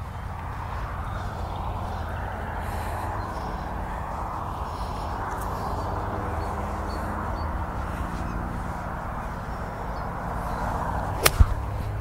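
Golf iron striking a ball off grass: one sharp crack near the end, with a faint second click right after it. Before it there is only a steady outdoor hiss and low rumble.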